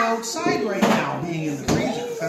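Young children's voices chattering and babbling, with two brief knocks, one about a second in and one near the end, from a spatula working dough in a stainless steel mixing bowl.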